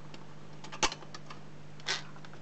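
Clicks and a sharp knock from vinyl records being handled on a Dansette record player's turntable and spindle. The loudest knock comes a little under a second in, another click near the end, over a steady low hum.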